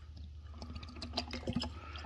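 Black Rit dye pouring from a plastic bottle into the water in a plastic pump sprayer's tank, a faint trickle with small ticks.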